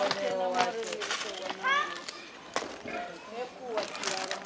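Several people's voices talking and calling out, with a short sharp rising call about two seconds in and a few sharp knocks in between.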